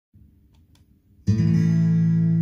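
Recorded country song opening: after faint low hiss, an acoustic guitar chord comes in suddenly about a second in and rings on.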